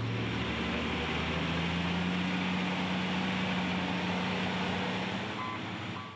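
Steady engine hum of heavy earthmoving machinery. Its pitch steps up about a second in, then holds, and it eases off slightly near the end.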